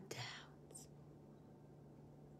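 A woman's voice trailing off with a soft breathy sound in the first half second, a brief faint hiss just after, then near silence: room tone with a faint steady hum.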